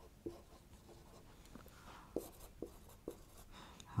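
Marker pen writing on a whiteboard: a series of faint short strokes and taps as words are written.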